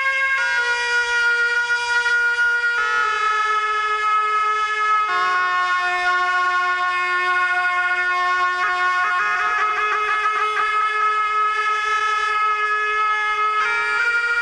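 Slow instrumental background music: a melody of long held notes, each lasting a few seconds and stepping to a new pitch, with a wavering passage around the middle.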